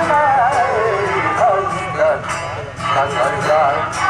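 A man sings a classical Balochi song (sot) in a long, ornamented melody whose pitch wavers and glides. A string instrument accompanies him.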